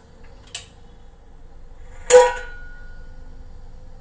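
Steel kitchen utensils clanking: a light click about half a second in, then one sharp metallic clank about two seconds in that rings on briefly.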